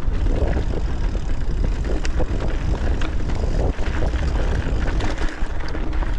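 Wind buffeting the microphone in a steady low rumble as a mountain bike runs fast downhill on a rough, rocky trail, with tyre noise and scattered sharp clicks and knocks from the bike rattling over the terrain.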